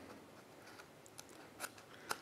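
Near silence: quiet room tone with a faint tick about a second in and a short soft rustle or click shortly before the end.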